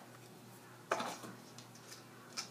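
A short clatter about a second in as a ruler and a plastic bottle are picked up and handled on a tabletop, over faint room tone.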